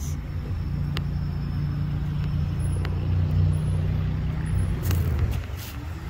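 Steady low engine hum of a parked sheriff's SUV idling close by, which drops away about five seconds in.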